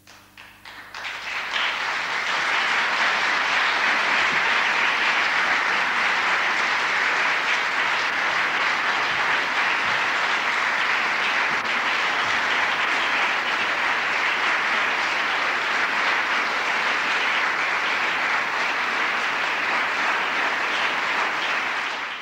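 Audience applauding: a few scattered claps at first, filling out within about two seconds into steady, dense applause.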